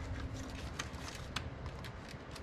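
A few faint, light clicks and taps as fuel injectors and the fuel rail are pressed and wiggled to seat them in the intake of a Toyota 3.4 V6, over a low steady hum.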